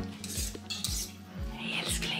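A knife and fork scraping and clinking on a plate as food is cut, in short bursts about half a second in and again near the end. Faint background music with a steady beat runs underneath.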